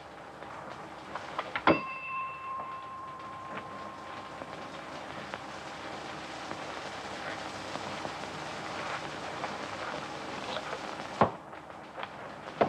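A single metallic clang about two seconds in that rings on for a couple of seconds, over a steady hiss; a second knock comes near the end.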